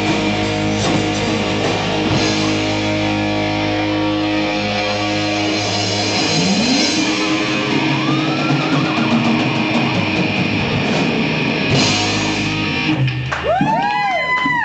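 Live hard rock band playing with distorted electric guitars, bass and drums and no singing: a long slide upward about six seconds in, and near the end the chords stop and a long note bends up and down.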